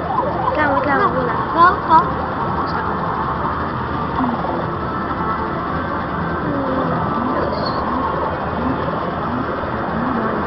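Arcade din: music and electronic sounds from the games, mixed with voices, with two short, louder sounds just under two seconds in.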